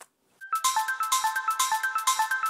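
A brief pause, then about half a second in a short, bright music sting begins: a quick run of short high notes over a light, regular ticking beat.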